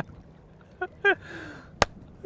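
A quiet pause broken by two short bursts of a man's laughter, then a single sharp click near the end.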